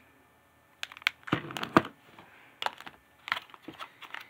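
Clear plastic clamshell packages of wax bars being handled and shuffled: light plastic clicks and crinkles beginning almost a second in, with a longer rustle about a second and a half in.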